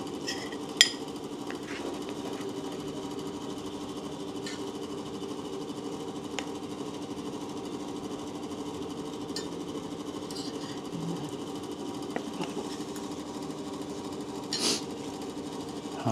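A spoon clinking against a plate a few times as food is scooped, the sharpest clink about a second in and another near the end, over a steady mechanical hum.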